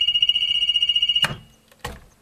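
A septic system control panel's alarm buzzer sounds a steady, high-pitched electronic tone. It cuts off with a click a little past a second in, and another click follows near the end.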